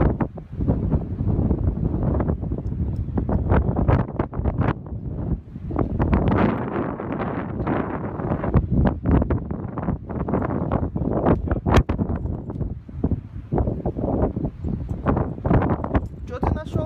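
Wind buffeting the microphone in uneven gusts, a loud rumbling rush that swells and drops throughout.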